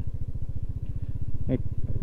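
Motorcycle engine running steadily while riding at low speed, heard as a fast, even low pulse from the bike the camera is mounted on.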